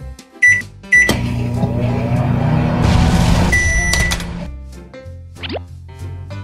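Toy microwave oven sound effects: two short button beeps, then a steady electronic humming run sound for about three seconds that ends with a beep.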